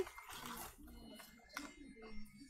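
Quiet room with faint background voices, with a single short click about one and a half seconds in.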